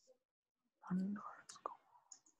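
A man's voice muttering a few quiet, unclear words about a second in, with scattered computer keyboard keystrokes around it.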